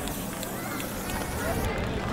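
Outdoor ambience with children's voices chattering indistinctly in the background.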